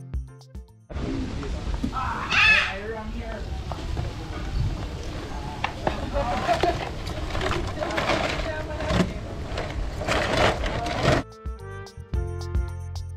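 Seasoned crayfish tipped into a wok of hot, oily seasoning and sizzling, with clicks of shells and tongs and a few indistinct voices. Background music plays briefly at the start and comes back near the end.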